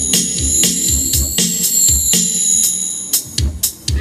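Live band playing a ballad instrumentally: keyboard and drums with a steady beat. About three seconds in, the sustained keyboard sound drops out, leaving the drum hits.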